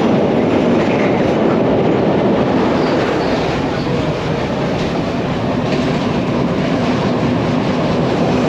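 Passenger train running steadily, heard from inside a carriage: a continuous loud rumble of the wheels on the rails and the rocking coach.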